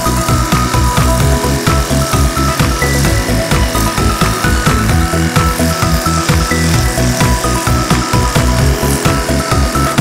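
Background music with a steady beat. Under it, the steady hiss and motor whine of a cordless pressure washing gun spraying a water jet, which stops near the end.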